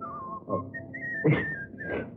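A person whistling a tune in long held notes: the first note slides down, then a higher note is held, slowly sagging. Short vocal sounds break in between the notes.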